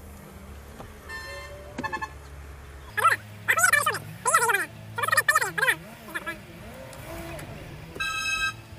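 Loud speech in several short outbursts over the steady low hum of a car's cabin while driving. Two short high tones sound about one and two seconds in.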